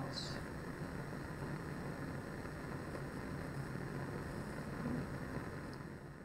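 Bunsen burner's roaring blue flame, a steady rushing rumble. There is a brief high click just after the start.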